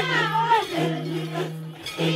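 Maasai group singing: a steady low droned note, broken off twice, under a higher voice whose pitch glides up and down.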